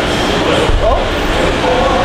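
Onlookers' voices, one exclaiming "Oh!" about a second in, over a steady wash of background noise in a gym.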